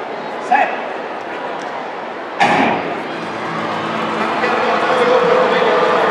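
Starting gun fires once for a sprint start, a single sharp crack with an echoing tail across the stadium, about two and a half seconds in. After it the crowd's noise grows steadily louder into cheering as the race gets under way.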